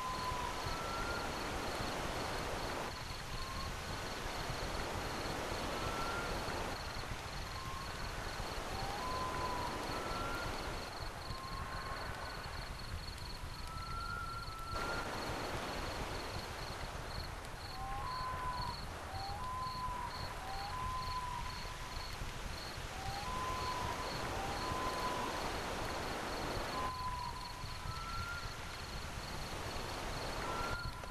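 Short whistled chirps from birds, some sliding up or down in pitch, scattered through a background of hiss. Under them runs a steady, high, finely pulsing tone.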